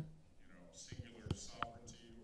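Faint, low speech in the background, with a couple of soft clicks a little past the middle.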